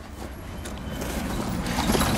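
Snow crunching and rustling, growing gradually louder.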